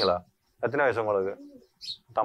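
Speech: people talking in Tamil, in short phrases with brief pauses.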